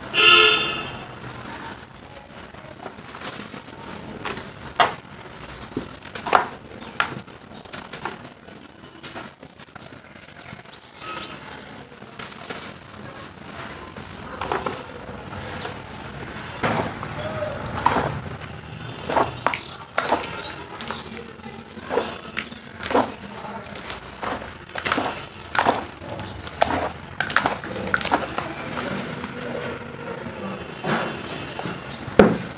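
Hands crumbling dry mud chunks into water in a plastic tub: irregular crunchy crackles, falling grains and wet splashes, with the loudest burst right at the start.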